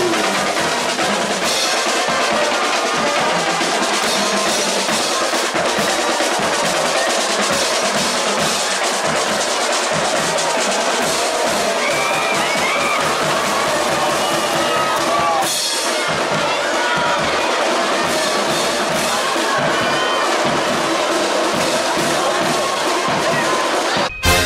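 Marching band (banda marcial) playing: brass with bass drums, snare drums and crash cymbals, loud and continuous.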